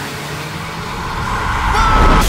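Car engine accelerating hard in heavy rain, the noise building steadily louder, with a high steady squeal, like tyres, joining near the end.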